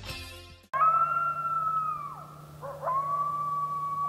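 Coyote howls: a long high howl held steady and then dropping away about two seconds in, followed by a second howl that rises and holds to the end. The tail of guitar music cuts off just before the first howl.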